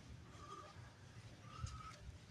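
Faint footsteps and handling noise from a hand-held camera being carried while walking, with short faint squeaks every half second or so and one slightly louder step near the end.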